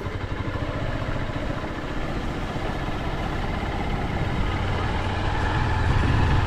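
Single-cylinder-style motorcycle engine running steadily at low speed while riding over a rough dirt and gravel road, getting a little louder toward the end.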